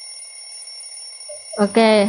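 Steady high-pitched electronic alarm tone, several pitches held together without pulsing, signalling that time is up. A voice speaks over it near the end.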